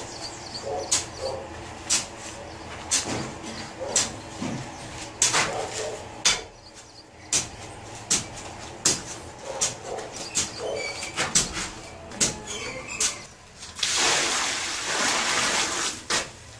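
Hoe scraping and knocking against a concrete floor while mixing dry sand-and-cement subfloor mortar, in irregular strokes roughly once a second. Near the end, about two seconds of water pouring from a bucket onto the mix.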